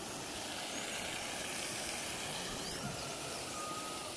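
Steady outdoor background noise, with a faint short whistle near the end.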